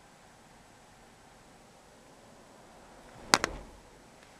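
Faint steady road noise inside a moving car's cabin, then two sharp clicks in quick succession about three seconds in, much louder than the rest.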